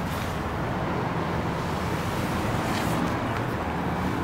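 Steady low rumble of motor-vehicle noise.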